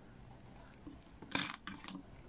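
Metal fly-tying tools clinking: one short sharp clink about a second and a half in, then a couple of lighter clicks.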